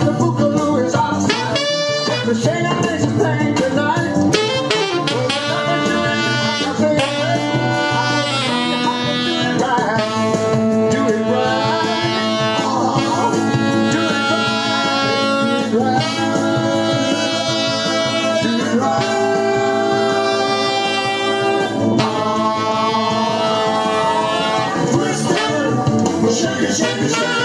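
Alto saxophone playing soul horn riffs and held notes along with a recorded soul band track with a male lead singer.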